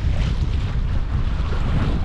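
Wind buffeting the microphone on the deck of a sailing yacht under way, a steady low rumble over a rush of wind and sea.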